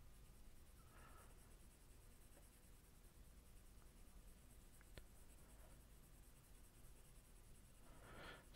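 Near silence, with the faint scratch of a graphite pencil shading on paper in rough strokes, and a light tick about five seconds in.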